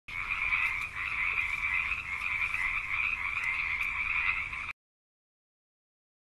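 Frog calls in a continuous, fast, even trill that cuts off suddenly after about four and a half seconds.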